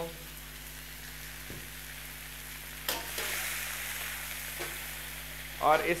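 Chicken pieces sizzling in hot ghee in a steel karahi, just after ginger-garlic paste has gone in. About three seconds in there is a sharp metal clink, and the sizzling then grows louder as the pieces are stirred and turned over high heat.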